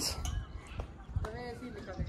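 Soft, quiet speech: a couple of short voiced phrases, with a low, uneven rumble underneath.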